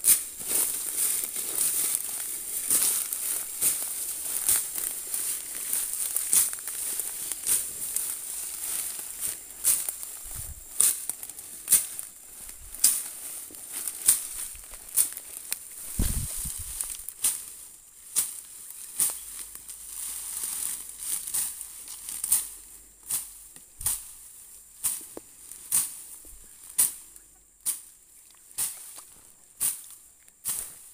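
Resam (iron fern) thicket being trampled underfoot: dry fronds and stems crackling and snapping in a dense, irregular run that settles into about two crunches a second in the second half. One low thump about sixteen seconds in.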